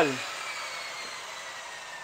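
Table saw winding down: a slowly falling whine over a fading hiss as the motor and blade slow.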